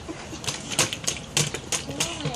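Hands slapping shallow water on a plastic high-chair tray: about five wet slaps, starting about half a second in and running on to the end.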